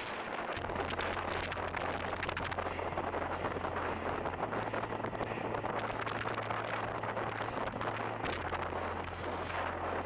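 Wind noise buffeting the microphone of head-worn Google Glass on a road bicycle at speed: a loud, steady rush with many small crackles. A low hum runs underneath and steps in pitch twice.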